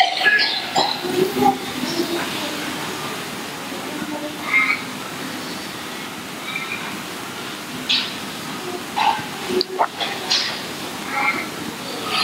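Several people murmuring prayers quietly under their breath, indistinct and overlapping, in short scattered fragments over a steady background hiss.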